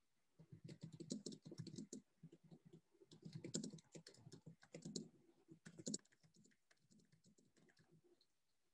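Faint typing on a computer keyboard: quick, irregular keystrokes in bursts, thinning out after about six seconds.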